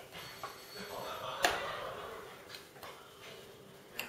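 Small spoon stirring cake batter in a ceramic mug, with a few light clinks against the mug, the sharpest about one and a half seconds in.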